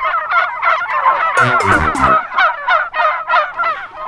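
A flock of white domestic turkeys gobbling, many birds calling over one another in a continuous chorus, with one louder, deeper call about a second and a half in.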